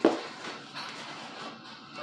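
A knock at the start, then a wooden spoon scraping and stirring homemade powdered laundry detergent in a plastic bin.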